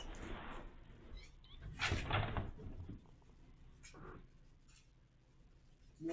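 A cat calls briefly about two seconds in, with a fainter, shorter sound about four seconds in, against quiet room sound.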